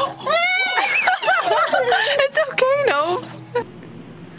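High-pitched human voices squealing and laughing in a run of rising and falling cries, which stop about three and a half seconds in.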